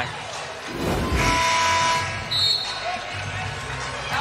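A basketball being dribbled on a hardwood arena court over crowd noise in a large hall, with a brief held chord of arena music about a second in.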